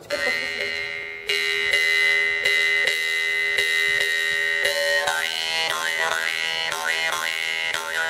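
Iron Yakut khomus (jaw harp) by Innokenty Gotovtsev, the 'Sterkhi' model, played with a steady drone plucked in a quick, regular rhythm. A high overtone is held at first, then from about five seconds in the overtones move up and down in a melody.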